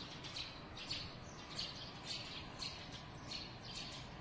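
Small birds chirping faintly outdoors, short high chirps repeated two or three times a second over a low steady background hum.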